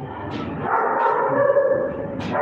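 A young puppy whining in one long, fairly steady high note.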